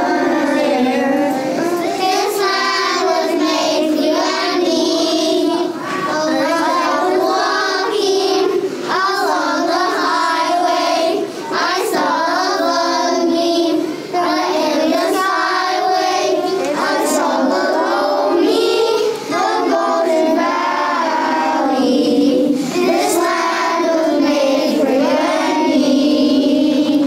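A group of young children singing a song together, the singing running continuously.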